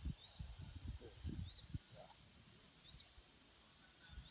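A bird calling outdoors, repeating a short high chirp three times, about every second and a half, over a faint steady high hiss. A few soft low thumps come in the first two seconds.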